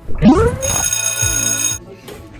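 An electronic sound effect: a quick rising swoop, then a steady, buzzy ringtone-like tone for about a second that cuts off sharply.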